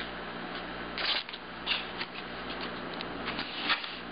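Handling noise from insect pins being picked up and pushed into a styrofoam block: a few short scratches and clicks, scattered irregularly.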